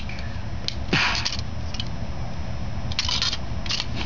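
Plastic Lego pieces being handled, scraping and rattling in a few short bursts about a second in and again near the end, over a steady low hum.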